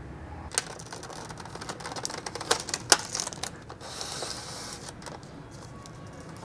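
Hands handling a cardboard bento box and its plastic packaging: a run of small, irregular clicks and crackles, then a brief rustle about two-thirds of the way through.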